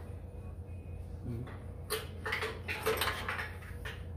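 Socket ratchet and bolt clicking and clinking against the steel frame cross member while a frame-stand bolt is threaded in, with a cluster of sharp metallic clicks in the second half.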